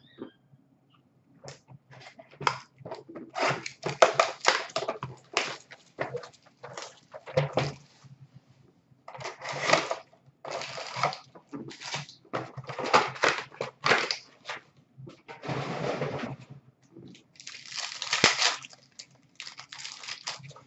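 Hockey card pack wrappers being torn open and crinkled by hand, with cards and cardboard handled: irregular bursts of crinkling and rustling, with a faint steady low hum underneath.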